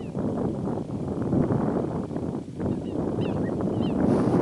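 Wind rumbling on the microphone in open country, with a few faint, short, high chirps, most of them in the last second.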